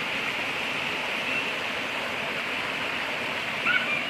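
Steady rushing of a small river cascade spilling over rock into a deep pool.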